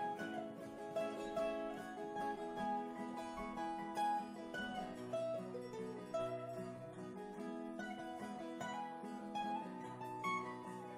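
An acoustic guitar and a mandolin play an instrumental break in a folk song, with plucked notes moving steadily over the guitar's chords.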